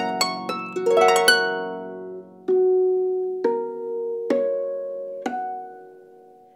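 Pedal harp played solo: a fast rising arpeggio of plucked strings in the first second or so, then four slower single notes or chords about a second apart, each left to ring and fade.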